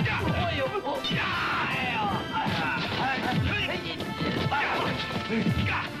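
Kung fu film fight soundtrack: a rapid run of dubbed punch and strike sound effects over music, with fighters' shouts.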